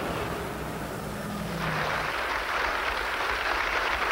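Traffic noise of buses running on a street. About halfway through, the sound changes to a steadier, hissier noise.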